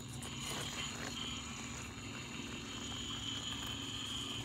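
Electric axle motors of a motor-on-axle RC rock crawler running slowly under load as it climbs a near-vertical rock face: a faint, steady hum with a thin whine above it.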